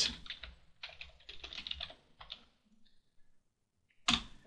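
Typing on a computer keyboard: a quick run of key clicks over the first two seconds or so, then a few scattered keystrokes.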